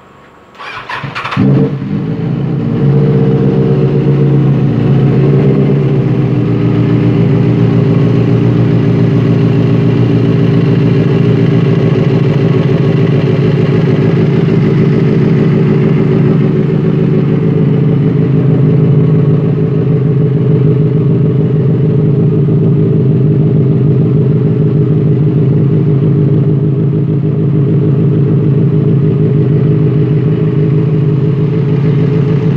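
Benelli TNT 600's inline-four engine with an aftermarket performance exhaust cranks on the electric starter for under a second, catches with a short loud flare, and settles into a steady idle to warm up. It has been started after sitting unused for a long time.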